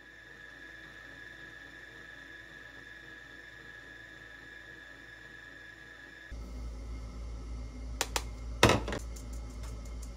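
Stand mixer running, beating batter, with a steady motor whine. About six seconds in the sound shifts to a louder low hum. A few sharp clicks and knocks follow near the end.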